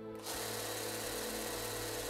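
Scheppach BTS900 belt and disc sander's 370 W motor running with no workpiece on the belt: a steady hum with an even whir of the sanding belt, setting in suddenly about a quarter of a second in.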